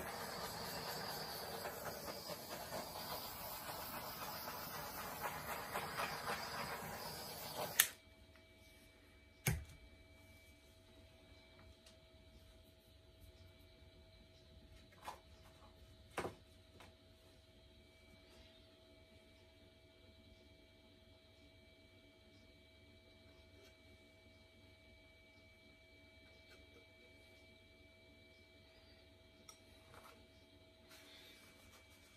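A handheld electric air blower rushing steadily as it blows acrylic paint across the canvas, then switched off with a click about eight seconds in. After that there is only faint room hum and a few light taps.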